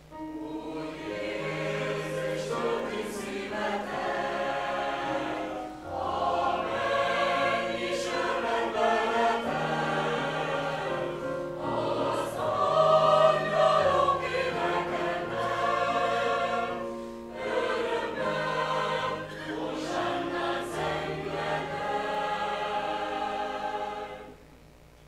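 Mixed choir of men and women singing in parts, in long phrases with short breaks about six seconds in and again near eighteen seconds. The voices stop together near the end.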